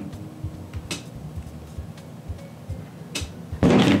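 Soft background music with a faint, even low beat, with two light clicks from handling objects on the tabletop, about a second in and about three seconds in.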